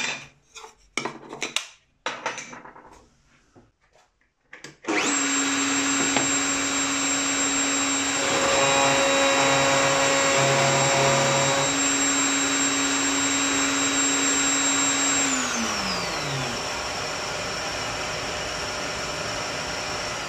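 Electric wood router mounted under a router table. A few handling knocks come first, then the motor starts about five seconds in with a steady high whine. For a few seconds it cuts a profile into a hardwood board, sounding a little louder and busier under the load. It is then switched off, its pitch falling as it spins down, while a steady rushing noise carries on.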